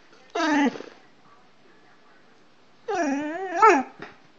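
A dog making two drawn-out, howl-like vocal calls: a short one falling in pitch near the start, then a longer one near the end whose pitch rises and falls.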